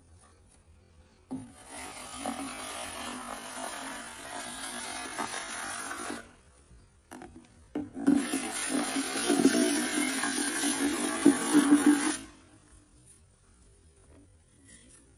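A power drill with a mixing paddle running in a plastic bucket of thick white compound, in two bursts of about five and four and a half seconds, the second louder.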